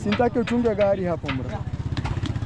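An engine idling with a steady, even low pulsing, under people talking.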